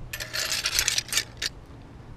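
A handful of metal kitchen knives clinking and rattling together as they are gathered up. There is a dense clatter for about a second and a half, ending in two separate clinks.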